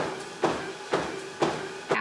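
Footfalls on a Sole treadmill belt, about two steps a second, over the treadmill's steady motor hum.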